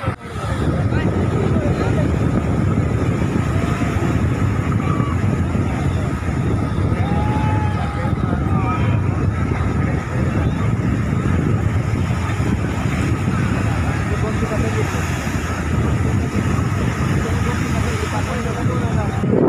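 Steady rushing of surf and wind against a phone microphone, with faint, indistinct voices calling out in the distance.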